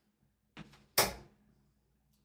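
A 95% tungsten steel-tip dart landing in a bristle dartboard: one sharp thud about a second in, preceded by a faint knock.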